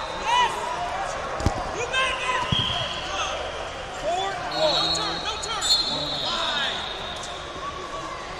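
Wrestling shoes squeaking on the mats in short repeated chirps, with two thuds of bodies hitting the mat about one and a half and two and a half seconds in, over shouting voices in a large hall.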